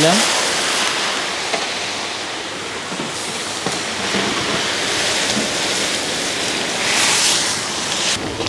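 Hot water poured from a jug into a large pan of spice paste frying in hot oil, hissing and sizzling steadily as it boils off in steam.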